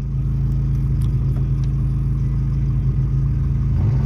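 Car engine idling steadily, a low even hum.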